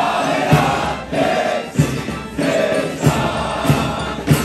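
A military marching band playing a march, with held melody notes over a steady bass drum beat about every 0.6 seconds.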